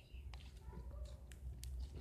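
Slime being squeezed and worked in the hands, giving a few faint, sharp wet clicks and pops.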